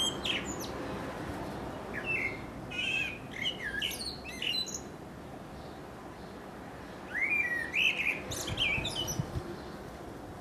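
A male Eurasian blackbird singing: clusters of fluty whistled phrases, each ending in quick high twittering notes, in two bouts, the second starting about seven seconds in.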